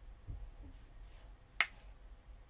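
A single sharp click about one and a half seconds in, over faint room tone, with a soft low thump shortly after the start.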